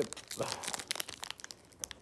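Foil wrapper of a Pokémon TCG booster pack crinkling and tearing as it is pulled open by hand, a fast run of small crackles.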